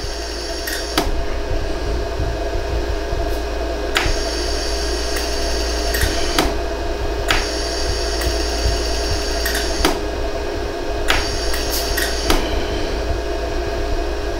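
Jewelry laser welder running with a steady hum, firing sharp clicks at uneven intervals, every second or few, as its pulses fuse fine gold wire into holes in a hollow gold earring.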